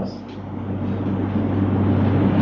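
A steady low droning hum that grows a little louder after the first half second.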